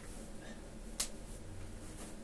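A single sharp click about a second in, over faint steady room hum.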